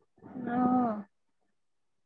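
A man's voice: one drawn-out, closed-mouth 'hmm', about a second long, steady in pitch and dipping at the end.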